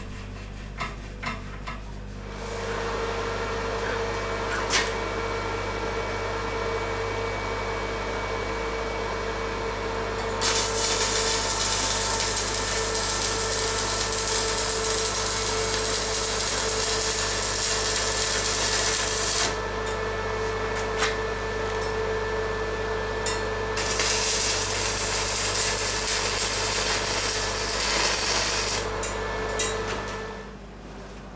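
Electric arc welding on a steel tube frame. A few light metal knocks come first, then a steady hum starts about two seconds in. The arc's loud, crackling hiss follows in two long runs, one of about nine seconds and one of about five, with a pause between.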